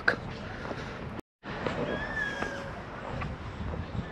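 Quiet outdoor background noise, steady throughout, broken by a short complete dropout to silence about a second in where the recording is cut.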